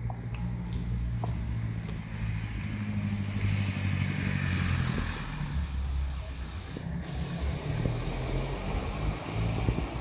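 Street traffic: a steady low engine rumble, with a vehicle passing that swells to a peak around four seconds in and then fades.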